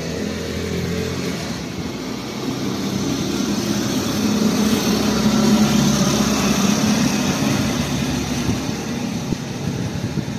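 A motor vehicle engine running nearby, a steady low rumble that swells to its loudest about halfway through and then eases off, as if the vehicle is passing.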